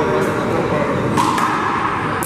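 Rubber handball striking the wall and court in a few sharp slaps, two of them in quick succession a little past a second in, over a steady background of room noise.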